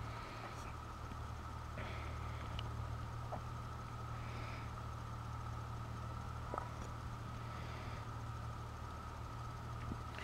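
Quiet room tone: a steady low hum with a faint thin high whine, and a couple of faint clicks of handling.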